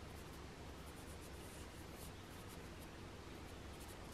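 Faint scratchy strokes of a paintbrush laying oil paint onto a painting panel.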